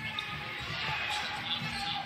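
Basketball arena sound during live play: faint background music and indistinct voices echoing in a large hall.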